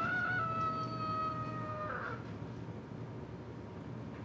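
A rooster's cock-a-doodle-doo crow, ending in one long, slightly falling note that stops about two seconds in.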